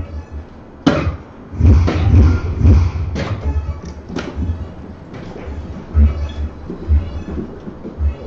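Electronic soft-tip dart machine at the end of a throw: several sharp knocks in the first half, then the machine's sound effects, over background music.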